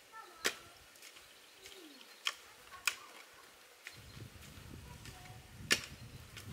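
A hatchet chopping into a root or dead branch in the ground: four sharp, irregular strikes with lighter knocks between, the last one the loudest.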